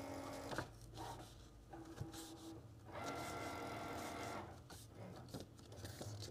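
Cricut cutting machine working faintly, its motors whining in short stretches that change pitch, with light rustling and clicks of cardstock being folded by hand on its score line.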